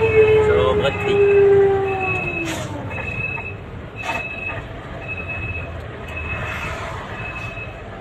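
A long air-horn blast on one steady note, sagging in pitch and dying away about two and a half seconds in, over the low running of a heavy vehicle's engine. A short high beep repeats about once a second throughout.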